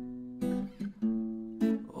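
Acoustic guitar strummed alone, three chord strokes about half a second apart, each left ringing.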